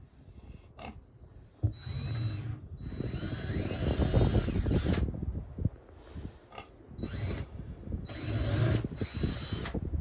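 Berkshire-Hampshire cross pigs lying asleep and grunting. The rough, noisy grunts come in two long stretches, one from about two seconds in and one near the end.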